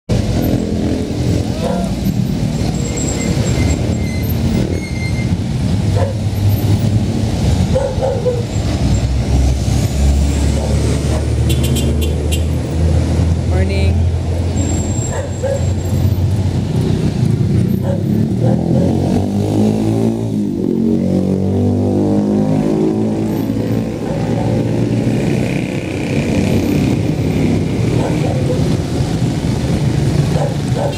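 Small motor vehicles passing slowly at close range: mini utility trucks and motorcycle-sidecar tricycles running at low speed, one engine's pitch rising and falling about two-thirds of the way in, with people's voices in the background.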